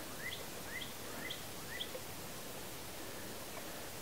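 A small bird giving four short rising chirps, about two a second, that stop about two seconds in, over faint steady outdoor background noise.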